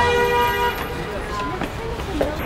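A vehicle horn sounds one steady note for under a second at the start, over street noise and the voices of people nearby.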